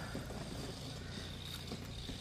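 Quiet outdoor background: a faint, steady low hum and hiss with no distinct event.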